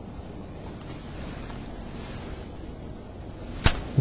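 A pause in a man's speech: steady low background hiss, with one short sharp click near the end.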